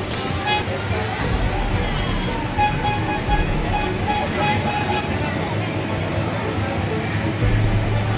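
Busy street ambience: music playing among people's voices, over a steady low rumble of motor traffic.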